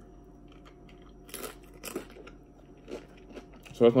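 Faint eating sounds: chicken wings being chewed, with a handful of short, sharp crackles spread through the pause.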